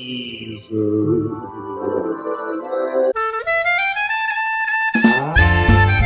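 Jazzy opening theme music: a horn plays held notes and slides upward, then the full band comes in with bass and drums about five seconds in.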